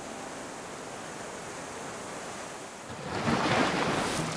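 Steady rushing noise like surf, from the intro's sound design, swelling louder about three seconds in.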